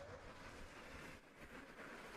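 Near silence: faint, even background noise with no distinct sound.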